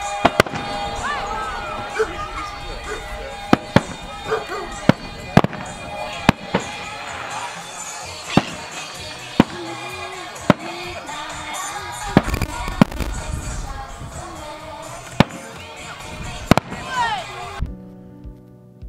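Aerial fireworks bursting: a string of sharp bangs at uneven intervals, about fifteen in all.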